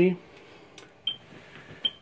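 Quiet room with a faint click, then two very short high-pitched blips, one just after a second in and one near the end.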